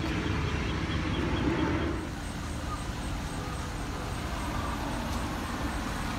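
Steady outdoor background rumble, like distant road traffic, with no distinct events. It eases slightly about two seconds in, where a faint high-pitched whine comes in.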